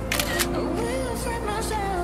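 Camera shutter sound, two quick clicks near the start, over background pop music with a sung vocal.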